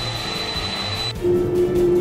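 Background music over a steady rushing jet-engine noise from a simulated Boeing 747 on the runway. A little past a second in, the rushing drops away and a steady held note comes in.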